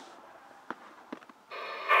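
Faint room tone with a couple of small clicks, then about one and a half seconds in the Yaesu mobile radio's speaker opens with a steady hiss, getting louder near the end: the simplex repeater starting to transmit back the recorded test call.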